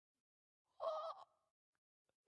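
A man's short spoken exclamation, 'Oh,' about a second in, with silence around it.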